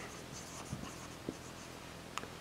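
Marker pen writing on a whiteboard, faint short squeaky strokes.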